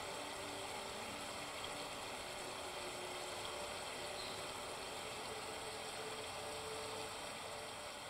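A video of a babbling stream underlaid with meditation music, played faintly from a laptop: a steady rush of running water with a few soft, long-held tones coming and going.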